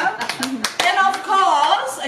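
A small group of people clapping in welcome, the claps scattered and thinning out, with several voices talking over them.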